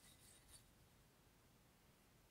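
Near silence, with a faint scrape of an X-Acto craft-knife blade on soft, damp clay about half a second in as the ocarina's ramp is cut.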